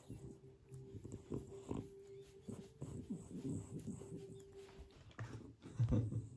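French Bulldog making irregular short grunts and snuffles while its lips and jowls are rubbed, with a louder one near the end.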